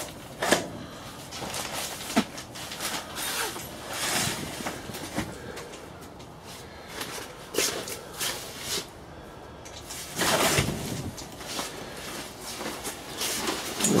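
Canvas tent walls rustling, with scattered clicks and knocks from metal tent poles and bows being handled and lowered. There is a louder rustle about ten seconds in.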